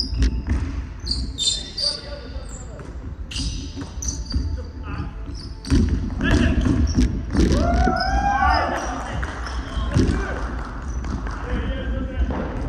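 A basketball bouncing and thudding on a hardwood gym floor during a game, with voices and a few high squeaks. It echoes through the large hall and gets louder and busier about halfway through.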